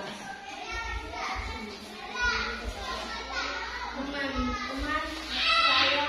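Children's voices chattering in a classroom, several talking at once, with one louder child's call near the end.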